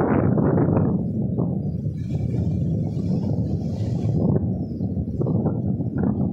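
Strong wind buffeting the microphone with a loud, rough low rumble, over choppy sea washing onto the shore.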